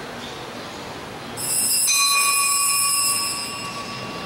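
Altar bells rung at the elevation of the host: a sudden bright jingle about a second and a half in, settling into several clear ringing tones that hold for about two seconds and then fade.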